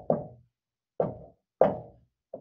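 Marker tapping and knocking against a whiteboard while numbers are written: a few short, separate knocks.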